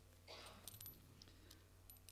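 Near silence, with a faint rustle of clothing and a few small clicks as a cord necklace with a black obsidian pendant is pulled off over the head close to the microphone.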